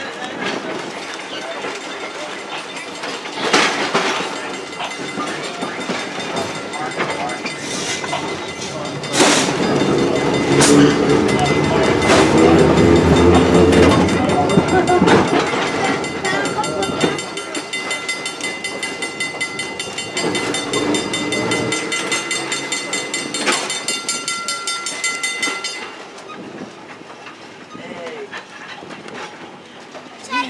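Open-air electric trolley car running along the track, its wheels clicking over the rail joints and loudest in the middle. A thin steady whine comes in during the second half, and the running gets quieter near the end as the car slows.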